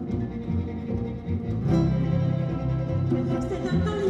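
Live string ensemble playing an instrumental introduction: plucked strings over bowed strings and a low bass line, pulsing at first, then settling into a held low chord about halfway through.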